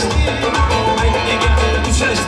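Live Uzbek band playing upbeat dance music: doira frame drum and drum kit over keyboard and electric guitar, with a heavy low beat.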